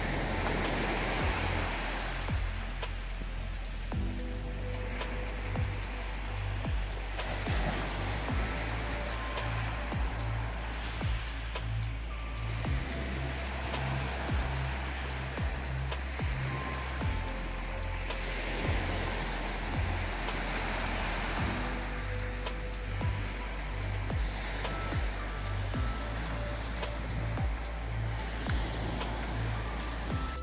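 Background music with a steady beat and bass line. Beneath it, waves break on the shore in slow swells.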